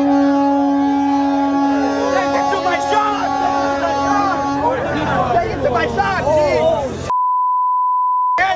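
A steady held tone, rich in overtones, sounds for about five seconds over crowd voices, then stops. Near the end a censor bleep, a pure single-pitch beep, blanks out all other sound.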